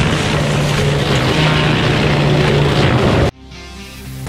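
Hydraulic disc mulcher on a John Deere compact track loader running and cutting into trees: a loud, dense noise over a steady low hum, with music underneath. It cuts off suddenly about three seconds in, leaving quieter music.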